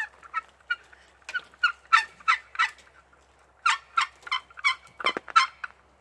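Wooden box turkey call worked by hand, giving two runs of short, sharp yelps with a pause between them, imitating a young turkey.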